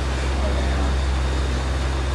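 A steady low mechanical hum, with faint voices in the background.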